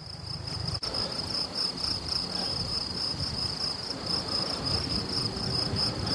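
An insect trilling steadily at a high pitch, with a low rumble underneath.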